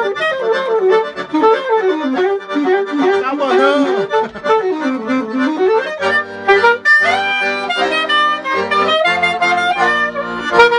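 Eagle alto saxophone and piano accordion playing a duet. Quick melodic runs fill about the first six seconds, then the music settles into longer held notes over chords with low bass notes underneath.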